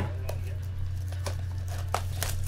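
A few sharp clicks and faint rustles from a cardboard trading card box being handled and opened, over a steady low electrical hum.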